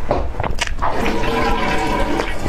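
Close-miked eating of whipped-cream sponge cake off a spoon: a few sharp, wet mouth sounds in the first second of the bite, then chewing, with a steady tone joining from about a second in.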